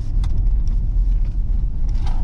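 Cabin noise inside a 2019 GMC Yukon AT4 during a hard brake-test stop: a steady, loud low rumble of road and drivetrain noise, with a few light clicks and rattles.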